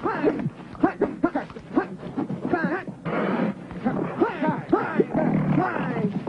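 Cheetahs snarling over a springbok kill while men shout at them to drive them off, a busy string of short cries that rise and fall in pitch.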